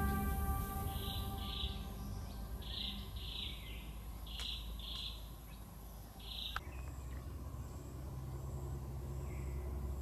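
Forest ambience: a bird calling in short notes, often in pairs, repeated about once a second for the first two-thirds. After a sharp click the calls stop and a faint steady insect buzz remains over a low hum.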